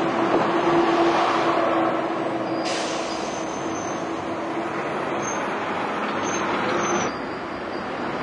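Diesel single-deck city buses running close by as they pull in, the engine loudest in the first two seconds. About three seconds in a steady hiss of air starts and runs until it cuts off sharply about seven seconds in.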